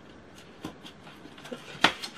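Hands handling and folding cardstock, with faint paper rustles and light ticks, then one sharp tap of the card near the end.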